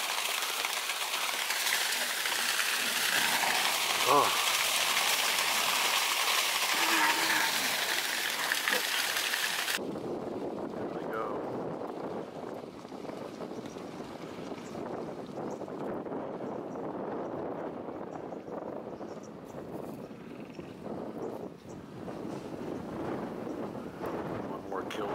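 A large herd of Cape buffalo stampeding: for about the first ten seconds a dense, hissing splash of many hooves running through shallow water and mud, then, after a sudden change, the lower, rougher rumble of the herd's hooves pounding up a dry, dusty bank.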